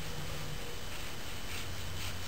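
Quiet room tone: a faint steady hum with no distinct knife strokes or other sharp sounds.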